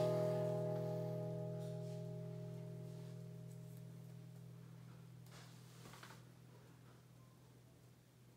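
An acoustic guitar's last strummed chord left ringing and slowly dying away, the higher notes fading out first and the low strings lingering longest.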